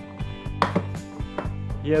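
A few sharp plastic knocks and clicks as a black plug-in AC adapter is pushed and seated into a wall socket, the loudest about half a second in.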